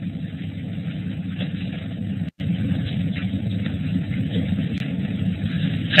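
Steady low rumbling background noise on an open audio line, with no speech, cutting out completely for an instant a little over two seconds in.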